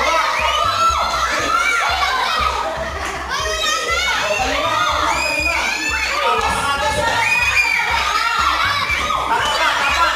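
A group of children shouting and squealing excitedly over music with a steady bass beat.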